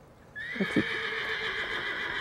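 A horse whinnying: one long, high call that rises slightly as it starts and then holds for about two seconds.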